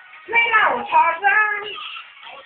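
A high-pitched voice singing a short phrase, lasting about a second and a half, with its pitch sliding between notes.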